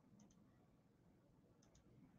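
Near silence broken by two faint double clicks, one just after the start and one about a second and a half later, from a computer mouse.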